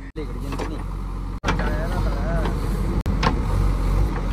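JCB backhoe loader's diesel engine running steadily, a low drone broken by three brief dropouts, with faint voices in the background.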